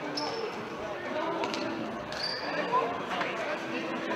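Futsal game sounds in a sports hall: the ball knocked and bouncing on the hall floor, two short high shoe squeaks, and players' and spectators' voices.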